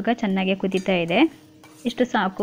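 A person speaking, in two stretches with a pause between them. A faint steady hum sits under the pauses.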